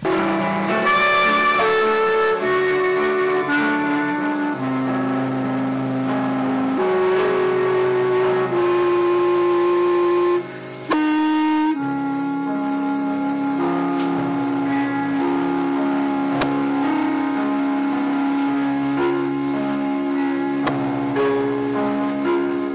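Solo clarinet playing a slow melody of long held notes, with a brief pause about halfway through.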